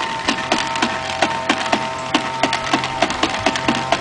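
Plastic toy lawn mower clicking as a toddler pushes it across grass, a steady run of about four clicks a second.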